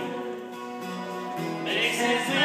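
Acoustic guitars playing, with a singing voice coming in near the end.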